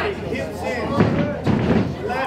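Two dull thuds from the fighters trading in the ring, about half a second apart, the first about a second in, under shouting voices ringside.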